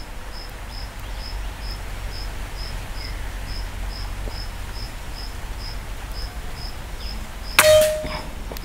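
A single air-rifle shot near the end: a sharp crack followed by a brief metallic ring. Under it an insect chirps steadily, about two and a half times a second.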